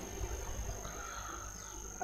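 Quiet room tone: a low hum with a faint, steady high-pitched whine, and a faint brief sound about a second in.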